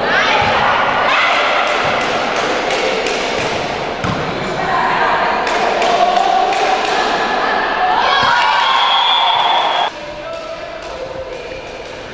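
Indoor volleyball match in an echoing gymnasium: players and spectators shouting and cheering, with the sharp thuds of the ball being struck and landing. The shouting dies down about ten seconds in.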